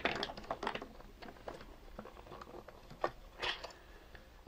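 Small irregular clicks and scrapes of hard plastic as the shell and arm joints of a Sharper Image toy fighting robot are handled and worked apart, with a sharper click about three seconds in.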